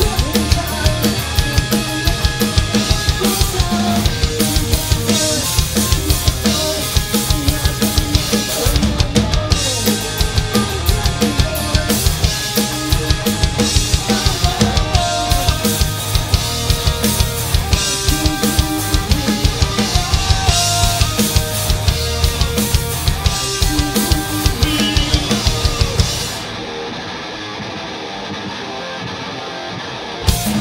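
Live rock band with electric guitar, bass guitar and drum kit playing a song with a steady driving drum beat. About 26 seconds in, the drums and bass drop out, leaving a quieter passage of guitar alone.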